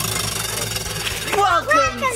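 A spinning prize wheel, its pointer flapper rattling in a rapid run of clicks over the pegs. From about halfway through, excited voices call out over it.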